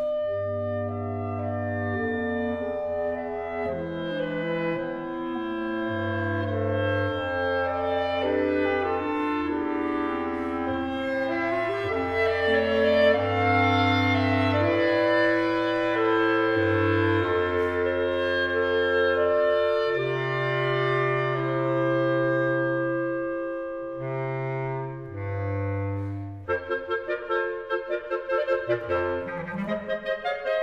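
Clarinet quartet of three B♭ clarinets and a B♭ bass clarinet playing in harmony: sustained chords over held bass-clarinet notes. About twenty-six seconds in, the ensemble switches to short, detached repeated notes.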